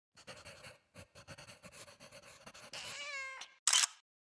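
Domestic cat meowing: one drawn-out, slightly falling meow near the end, after a run of soft irregular clicks. A short, sharp burst of noise follows just after the meow and is the loudest sound.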